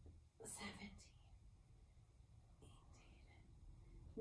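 Near silence: room tone, with a faint breathy exhale or whisper from the woman exercising about half a second in and another, fainter one around three seconds.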